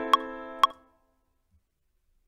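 A MIDI chord part playing back through a piano-like software instrument, a chord held under Ableton Live's metronome clicking twice a second at 120 BPM. The chord and clicks cut off under a second in as playback stops, leaving near silence.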